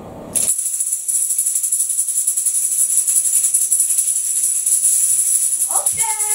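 Plastic-framed hand tambourine with metal jingles shaken hard and fast, a loud, continuous high jingling that starts suddenly about a third of a second in.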